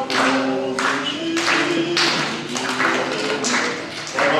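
Acoustic guitar strummed in a steady rhythm, about two strums a second, accompanying a man and a woman singing together in held notes.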